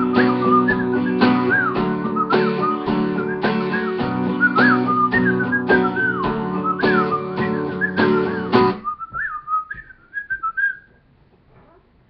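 Acoustic guitar strummed in a steady rhythm while a man whistles a melody over it. The guitar stops about nine seconds in, and the whistling carries on alone for a couple of seconds before dying away.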